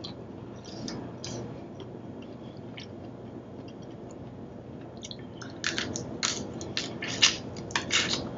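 Close-miked chewing and mouth sounds of someone eating boiled shrimp: faint at first, then a quick run of sharp mouth clicks a little past halfway.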